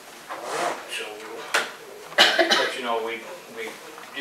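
Speech: people talking in a small meeting room, with a sharp click about one and a half seconds in.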